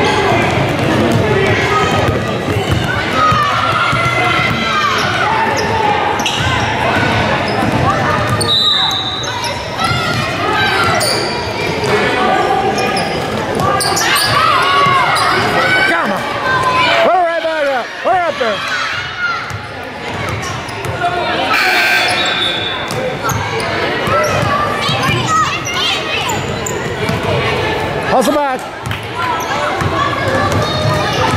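Basketball bouncing on a gym's hardwood floor during play, under steady talk and calls from spectators and players, echoing in a large hall.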